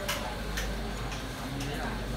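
Sewing-workshop room sound: a steady low hum under distant voices, with a few sharp, irregularly spaced clicks.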